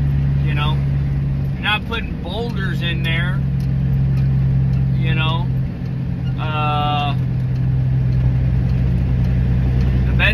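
Dump truck's diesel engine running steadily, a low drone heard from inside the cab, with a brief dip in the drone about two seconds in.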